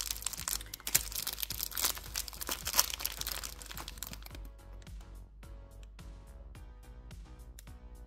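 Crackling and rustling of natural-hair mini twists being rubbed and twisted together between the fingers close to the microphone, for about the first four seconds, over soft background music that continues alone afterwards.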